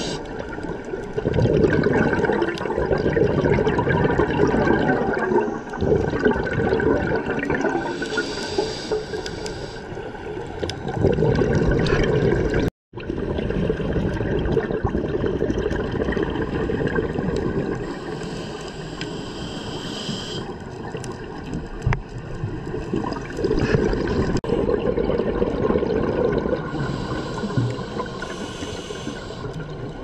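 Scuba diver breathing through a regulator underwater: a hissing inhale roughly every nine to ten seconds, with a burbling rush of exhaled bubbles between, over steady underwater rushing. The sound cuts out for a moment just before halfway.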